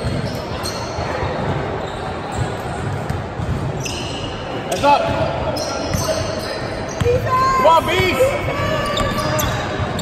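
A basketball dribbled on a hardwood gym floor, with short high squeaks and voices in the second half, all echoing in a large gym.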